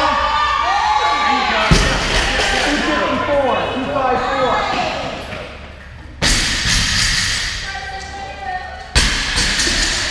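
Loaded barbells with rubber bumper plates dropped onto the gym's rubber floor: three heavy thuds about two, six and nine seconds in, each echoing in the large hall, over voices.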